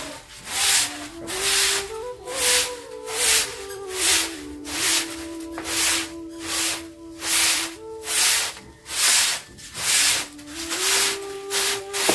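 Short-handled broom sweeping a smooth cement floor in quick, even strokes, about three swishes every two seconds. A soft background tune plays underneath.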